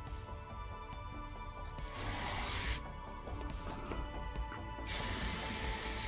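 Aerosol spray paint can hissing in two bursts of about a second each, the second near the end, over background music.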